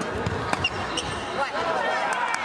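Badminton rally: a few sharp racket hits on the shuttlecock, with voices in the hall behind.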